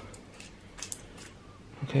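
Faint handling noise: a few soft, scattered clicks from a plastic drink bottle being held and fiddled with.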